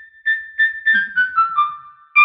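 Short intro jingle: a quick run of about six keyboard notes, each struck and ringing briefly, stepping down in pitch.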